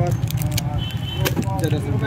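Plastic-wrapped packets of sketch pens crinkling and clicking as they are handled, several sharp separate clicks over a steady low hum.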